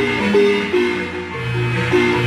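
Marimba music: a melody of struck notes over a low bass line, several notes sounding together.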